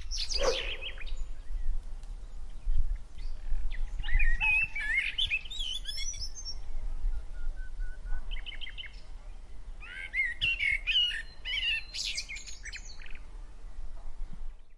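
A quick falling whoosh at the start, then songbirds chirping and warbling in two bursts, over a steady low rumble.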